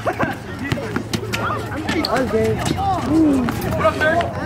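Several voices of players and onlookers shouting and calling out over an outdoor basketball game, with short sharp knocks, among them the ball bouncing on the concrete court.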